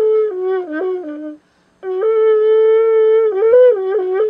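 Karhanol, a long bamboo wind instrument, blown in held, buzzy notes that step between two or three pitches, with a brief break for breath about a second and a half in before the playing resumes.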